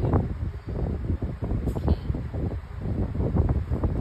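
Bentonite clay cat litter shifting and crunching under a cat's paws and nose in a plastic litter box: a run of irregular rustling scrapes.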